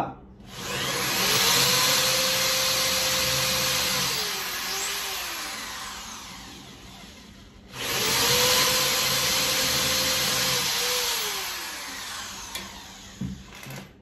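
Corded electric drill with a thin 2–3 mm common bit boring a pilot hole for a screw into the edge of an MDF drawer panel. It runs twice, about six seconds each time, with a short break about halfway: each time the motor whine climbs, holds steady, then drops away as the trigger is eased.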